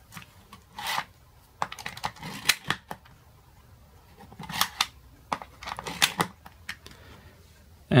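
Hands handling a small plastic Li-ion cell charger with an 18650 cell in its slot: scattered light clicks and brief rubbing of plastic, with a short scrape about a second in.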